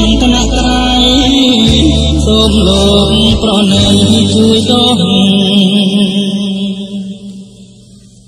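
Old Khmer pop song, its closing bars fading out over the last three seconds or so.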